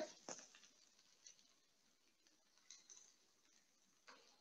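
Near silence: faint room tone, with one faint click just after the start.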